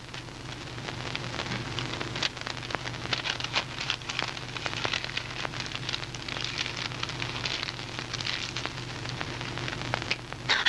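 Steady crackling and hiss over a low hum: the surface noise of an old, worn film soundtrack. There are denser patches of crackle about three to five seconds in and again later.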